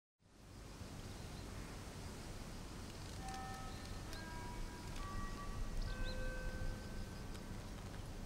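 Outdoor ambience of a deserted street: a steady low rumble under an even hiss. From about three seconds in, a few thin high notes are held for a second or so each at changing pitches, with a couple of short chirps.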